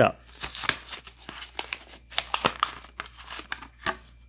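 A toy car's cardboard blister card being torn open by hand: paper ripping and plastic crinkling in irregular bursts.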